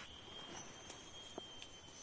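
Soft footsteps on a grassy forest path, a few faint taps, over a thin steady high tone.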